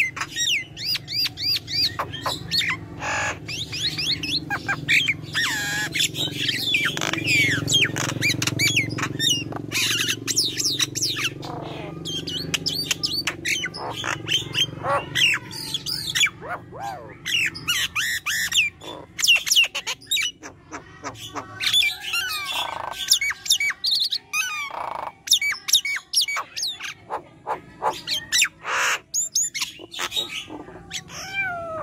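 Common myna singing a long, busy song of rapid whistles, gliding notes, clicks and harsh squawks, with hardly a pause.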